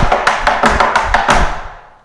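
Metal taps on tap shoes striking a wooden tap board in a fast, unbroken run of about seven clicks a second, stopping about one and a half seconds in. It is a pullback-based four-sound step, with the left foot tapping without a rest.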